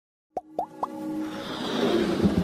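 Intro sound effects for an animated logo: three quick rising plops about a third of a second in, then a swelling whoosh that builds under a held music tone.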